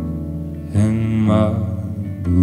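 Live acoustic guitar playing with a long held sung note that comes in about three quarters of a second in and bends in pitch.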